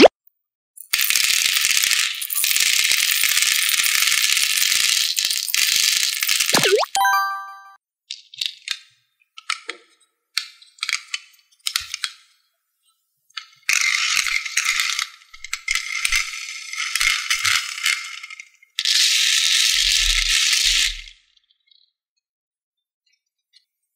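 Small round candy balls poured from a glass jar into a plastic tray, a loud continuous rattling cascade for about six seconds. It ends with a short rising glide and a brief ringing ding. Scattered clicks of single balls follow, then two more long runs of rattling balls in the tray in the second half.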